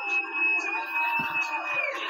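A loud, long whistle held on one steady high note, cutting off near the end, with a shorter, lower whistle in the middle. It sounds over crowd noise coming from a TV broadcast.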